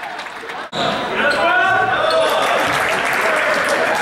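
Basketball being dribbled and bounced on a gym floor during play, with indistinct voices carrying in the large hall. A sudden cut a little under a second in is followed by a louder stretch.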